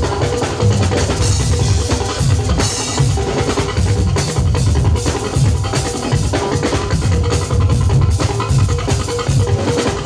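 Live band music: a drum kit with bass drum and snare keeping a steady, busy beat under bass and other instruments, with no singing.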